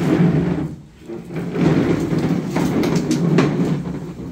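Loud, indistinct murmur of several people in a crowded room, with a few sharp clicks in the second half.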